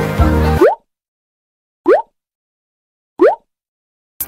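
Background music cuts off about half a second in. It is followed by three short, quick-rising plop sounds, a water-drop-style editing sound effect, about one and a third seconds apart with dead silence between them.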